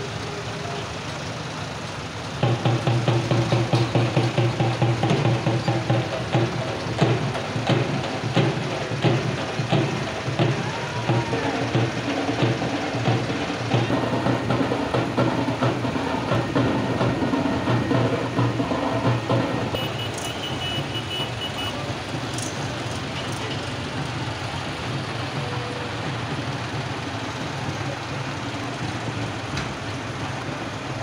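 A song with a fast, steady beat plays over the steady running of many tractor engines. The music starts a couple of seconds in and falls away about two-thirds of the way through, leaving the engines.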